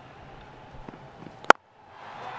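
Cricket bat striking the ball: a single sharp crack about one and a half seconds in, over faint ground ambience. It is a clean, full hit that sends the ball a long way, a big lofted shot.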